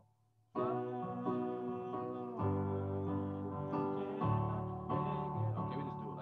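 Digital keyboard playing a sustained D major chord, D and A in the left hand and D, F sharp and A in the right. It starts about half a second in and is struck again a few times.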